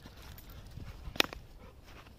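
Footfalls on a sandy path, with one sharp click a little past the middle.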